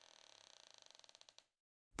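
Near silence, with a very faint creak: ticks that come faster and faster and stop shortly before the end.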